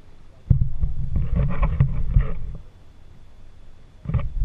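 Water sloshing and knocking against a kayak's hull close to the bow, a low rumbling rush that starts suddenly about half a second in and fades after about two seconds.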